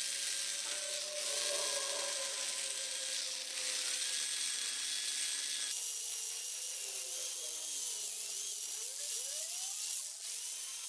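Power drill with a diamond core bit grinding a drain hole through a stone sink bowl, the motor whining over a gritty, high cutting noise. About six seconds in the cutting noise drops away and the motor's pitch wavers and rises as the bit is eased out of the finished hole.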